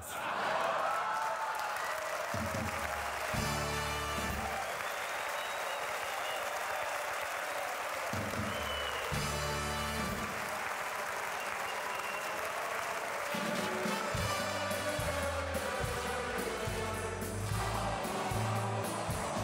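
Hall audience applauding steadily after a punchline, with band music playing along underneath; deeper notes from the band come and go several times.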